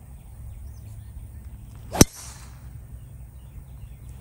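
Golf driver striking a ball off the tee: a single sharp crack about halfway through.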